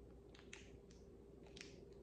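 Near silence with a few faint, scattered mouth clicks from biting and chewing a soft, gel-like fruit jelly candy, over a faint steady hum.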